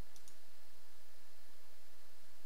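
Steady recording hiss with a low electrical hum, and two faint clicks just after the start.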